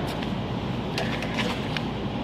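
Steady workshop background noise with a few faint, short clicks, about a second in and again later.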